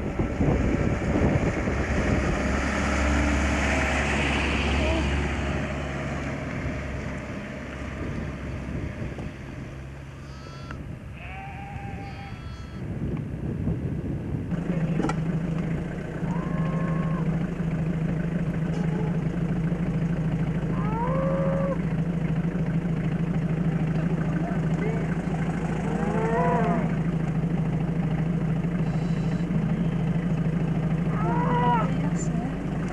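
A calf bawling several times in short rising-and-falling calls. Wind buffets the microphone over the first few seconds, and from about halfway a car engine idles with a steady low hum under the calls.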